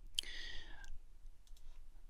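A few computer mouse clicks: a sharp one near the start followed by a faint brief hiss, then fainter clicks.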